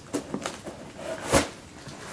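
Cardboard box packaging being torn and rustled by hand: a few short rustles, then a louder tearing sound about a second and a half in.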